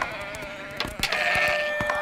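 Cartoon sheep bleating, with one held bleat starting about a second in, over sharp clacks of hockey sticks hitting a ball.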